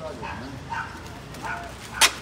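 Three short, faint vocal calls at intervals in the background.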